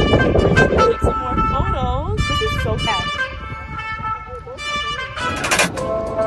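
Background music with a singing voice that glides and bends between notes.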